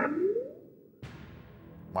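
Quiz-show timer sound effect marking the end of the 30-second phone-a-friend call: a rising swept tone that fades out within the first half second, then, about a second in, a low steady music bed.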